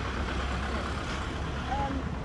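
Seafront road train passing, its engine a steady low rumble.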